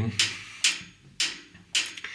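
Depth-setting crank on a WWII submarine torpedo tube being turned by hand, giving four sharp metallic clicks about half a second apart as the torpedo's running depth is set through the spindle.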